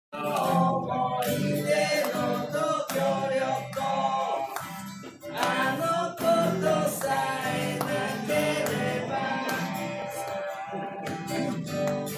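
Acoustic guitar being strummed while a man sings along.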